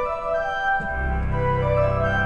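Organ playing a sustained jazz chord voicing with a melody line moving over it, outlining the chord. About a second in, a deep pedal bass note enters underneath.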